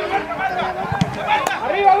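Several voices shouting and calling out on a soccer field, overlapping, with one or two short sharp knocks near the middle.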